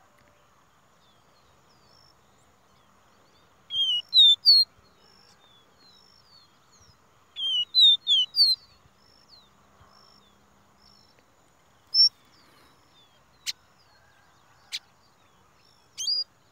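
A caboclinho, a small Brazilian seedeater, singing two quick bursts of high down-slurred whistled notes, about four and about eight seconds in. Single short notes follow near the end.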